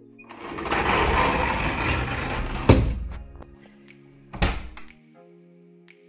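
Background music, over which a rush of rustling noise is followed by two sharp thunks about a second and a half apart, from a door being handled.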